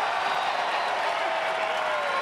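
Arena crowd cheering and applauding, a steady wash of many voices and hands.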